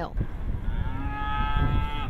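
A cow mooing: one long, drawn-out moo that starts about half a second in, its pitch easing slightly downward, over a low rumble.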